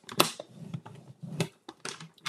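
Paper trimmer's scoring blade run down its rail across cardstock to score a fold line: a sharp click as the blade is pressed down, a faint scraping slide, then two more clicks near the end.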